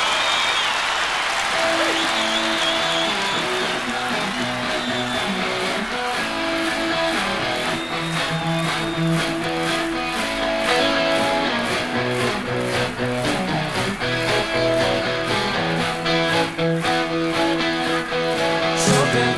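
Live rock band's electric guitars strike up a song's instrumental intro over a cheering, applauding crowd; drums come in about six seconds in with a steady beat.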